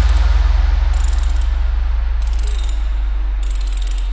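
Electronic dance music in a sparse breakdown: a held deep bass under a pulsing mid-range note, with short bursts of metallic, ratchet-like clicking about every second and a quarter. The bass fades slightly.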